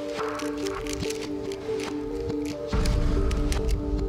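Background music with sustained notes, a low beat coming in a little under three seconds in, over quick irregular plastic clicks of a Square-1 puzzle cube's layers being turned.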